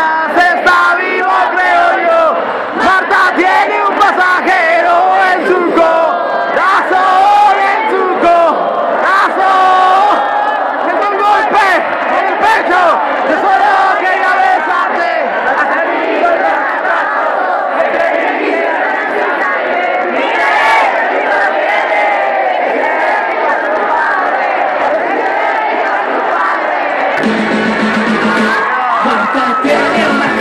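A large concert crowd singing loudly together with no band playing, many voices in unison. Near the end the band's instruments come back in underneath.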